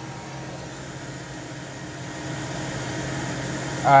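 Steady low hum with a rush of air from running cooling fans and machinery, growing slightly louder toward the end. A voice starts just at the close.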